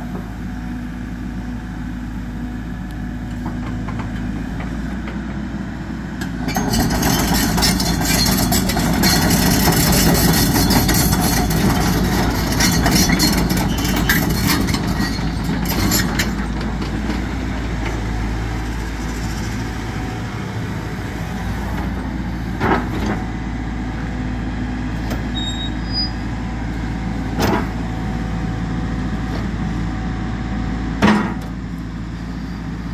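Cat 313F L GC hydraulic excavator's diesel engine running steadily as the machine swings and works its boom and bucket. The sound gets louder and hissier from about six to sixteen seconds in, and a few sharp knocks come in the last third.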